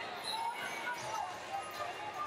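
Wrestling-arena ambience: overlapping distant voices and shouts from around a large hall, with scattered short knocks and squeaks from wrestling shoes and bodies on the mats.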